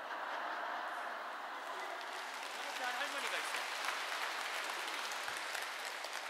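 Audience applauding steadily, with scattered voices mixed in.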